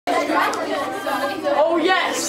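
Indistinct chatter of a group of children talking over one another, echoing in a hallway.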